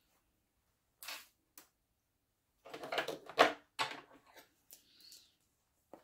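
Handling noises: a few short knocks and rustles, the loudest cluster about three seconds in. They come as small embroidery scissors are picked up.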